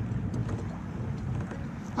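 Steady low hum of a distant motor under a light outdoor noise haze.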